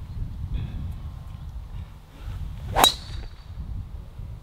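A golf driver striking a ball off the tee: one sharp metallic crack with a short, high ringing ping, about three seconds in.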